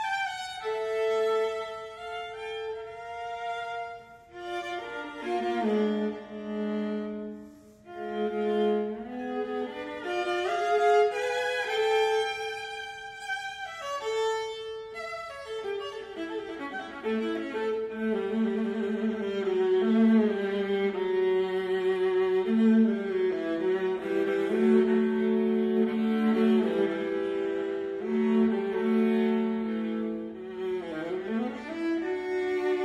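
Viola bowed in a classical-era concerto passage: a melodic line broken by short pauses, which becomes fuller and louder with sustained low notes about halfway through.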